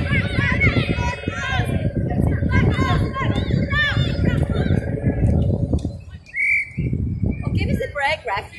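Players' shouted calls and voices across a sports field, mostly in the first five seconds, over a steady low rumbling noise. A short high tone sounds about six and a half seconds in.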